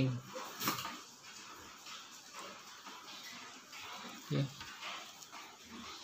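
Fingers handling and working a braided cord lanyard: faint rustling, with one sharp click about a second in.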